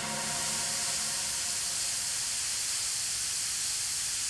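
Steady static hiss, like a detuned TV or VHS tape playing noise, brightest in the high end and holding at an even level.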